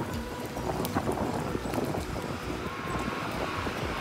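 Stroller wheels rattling and clattering over paving stones as the stroller is pushed along, a dense, irregular run of small knocks over a low rumble.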